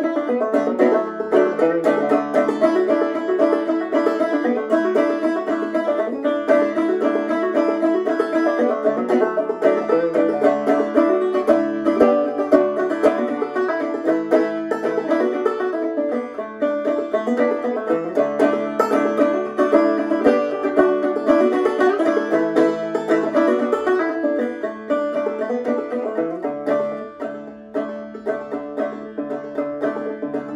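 Open-back banjo played solo, a steady, unbroken stream of plucked notes, easing off briefly near the end.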